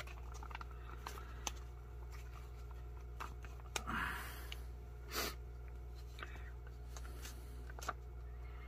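Faint crinkling and scattered clicks of a foil MRE retort pouch being handled and pulled open, with a short rustle about four seconds in and another about a second later, over a steady low hum.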